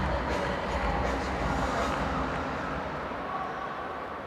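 Steady background ambience of a large roofed stadium: a low rumble with faint, indistinct crowd noise, easing slightly in the second half.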